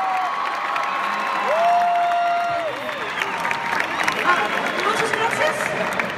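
Large concert crowd cheering and screaming, with one close voice letting out two long, held squeals, one right at the start and another lasting about a second from about one and a half seconds in.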